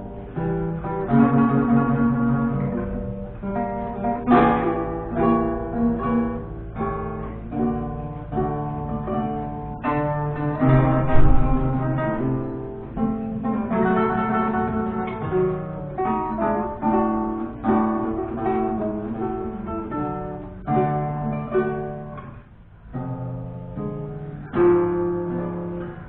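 A duet of two romantic-era guitars, reproductions of c.1815 Vinaccia and Fabbricatore models, playing plucked melody and accompaniment together, with a brief lull a few seconds before the end.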